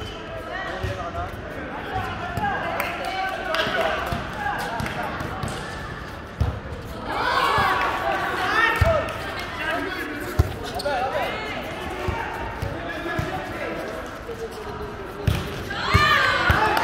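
Players' voices talking and calling in a large indoor sports hall, with scattered dull thuds of volleyballs being hit and bouncing on the court floor.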